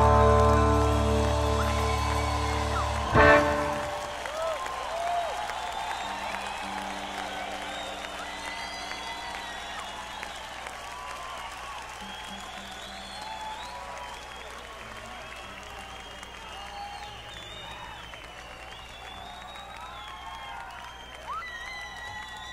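An electric rock band's final chord ringing out and fading, with one last short hit about three seconds in, followed by a concert audience applauding, cheering and whistling, heard on an audience tape recording. A faint steady hum stays under the crowd noise.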